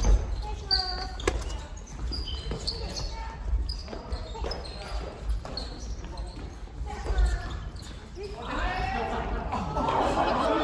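A family badminton rally on a wooden gym floor: sneakers squeak in short high chirps, rackets crack against the shuttlecock, and the hall echoes. Voices chatter, and grow busier near the end.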